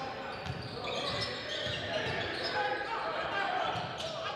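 A basketball being dribbled on a hardwood gym floor, a series of low thuds, with faint voices echoing in the large gym.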